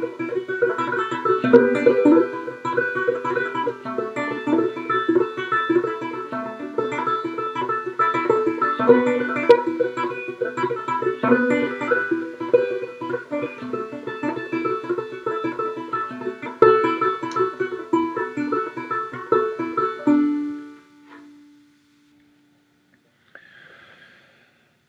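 Four-string banjo, played left-handed with the strings upside-down and capoed at the 7th fret, finger-picked with the thumb alternating with the index finger in a steady instrumental passage. The picking stops about 20 seconds in, and one last low note rings on for a couple of seconds.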